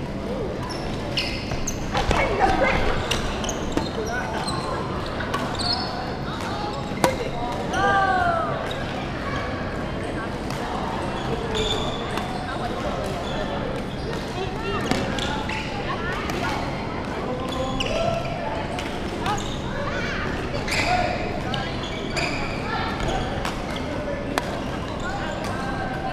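Echoing sports-hall din from badminton play: background voices with scattered sharp knocks and thuds.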